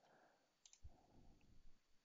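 Near silence, with a couple of faint computer-mouse clicks about a second in.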